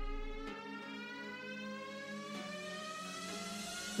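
Quiet background music: a sustained synthesized tone that glides slowly and steadily upward in pitch over a steady low note.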